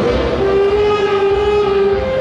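Saxophone ensemble playing, settling about half a second in onto one long held chord.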